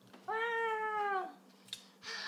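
A toddler's single drawn-out wordless call, about a second long, held at one pitch and sagging at the end, followed by a light click.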